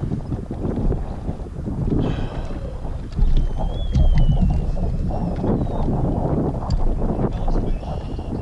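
Wind buffeting the microphone on a kayak out on open water, a steady low rumble. A faint thin whistle slides slowly downward partway through.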